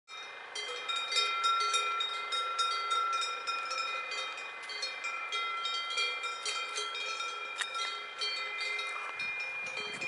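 Several cow bells clanking irregularly as the grazing cows move, each strike ringing on so that their differently pitched tones overlap. Wind rumbles on the microphone near the end.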